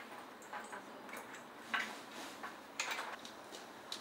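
Light, scattered clinks and knocks of a metal chain and a wooden shoulder yoke being handled, about half a dozen small sharp clicks over a few seconds.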